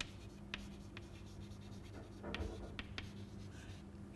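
Chalk writing on a chalkboard: faint taps and light scratches as a word is written out by hand.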